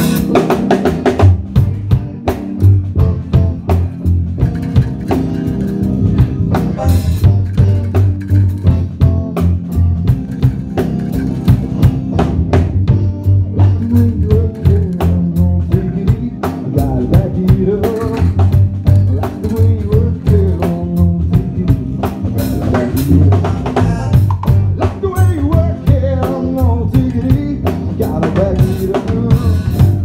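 Live band playing an instrumental passage: a drum kit with snare and rimshot hits drives a dense beat over a steady bass line, with a melodic line wandering above.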